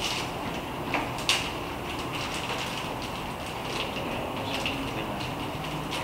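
Room tone of a small room, a steady low hum and hiss, with a few soft clicks, two of them close together just after a second in and fainter ones later.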